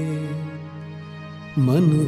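A Hindi devotional song: a held sung note fades out over a sustained instrumental drone, and the voice comes back in with a new line about one and a half seconds in.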